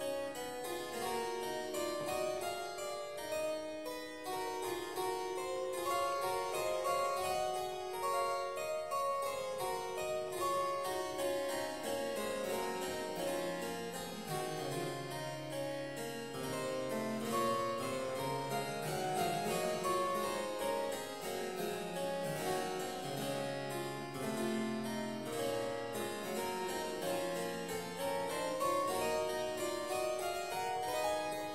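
Harpsichord built by Walter Chinaglia, played solo: a continuous stream of plucked notes over a bass line that sinks lower in the middle of the passage and climbs again.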